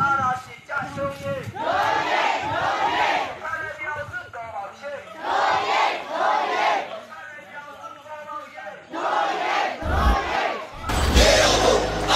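Crowd of strike marchers chanting slogans in unison, shouted phrases coming in bursts every second or two. Near the end comes a louder burst with a low thump.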